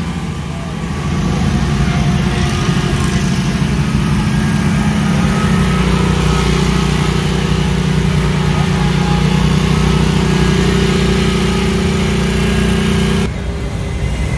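Gravely stand-on commercial mower's engine running steadily close by, growing louder about a second in and stopping abruptly near the end.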